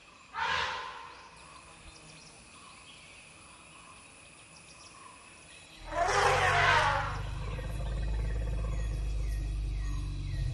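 Asian elephant trumpeting twice: a short call about half a second in, then a longer, louder one about six seconds in. A steady low hum sets in just before the second call and holds, and birds chirp in short repeated falling notes near the end.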